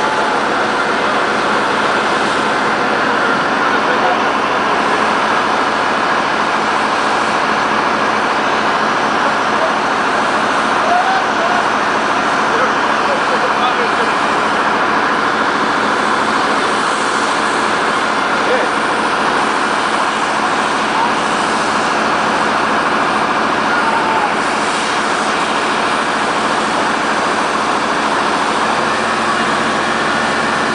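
Fire pump engine running steadily under load while foam is sprayed from a hose nozzle onto a car, a continuous loud rushing noise.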